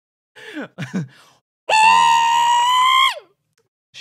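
A high-pitched voiced cry held on one note for about a second and a half, rising slightly and then dropping away at the end, after a brief 'ooh' and a laugh.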